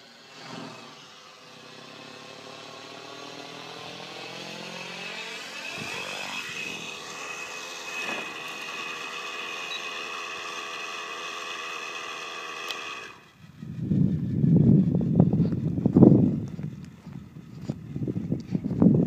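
Nitro-engined RC helicopter (T-Rex 700N) engine idling with its rotor spinning through an autorotation descent and after touchdown: a steady whine with several stacked tones, slowly growing louder and bending in pitch about six seconds in. About thirteen seconds in it cuts off, and loud irregular low thumps and rumbling take over.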